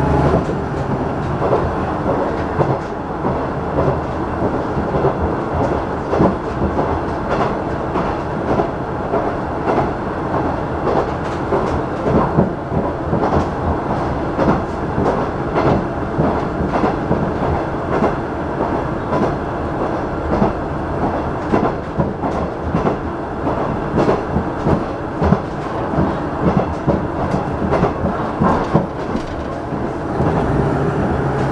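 Running sound inside a KiHa 110 series diesel railcar at speed: a steady rumble with frequent clacks of the wheels over the rail joints.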